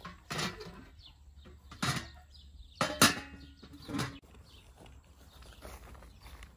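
Metal clanks and knocks from a samovar's chimney pipe and metal cookware being handled: about five sharp hits, the loudest about three seconds in, followed by a short metallic ring.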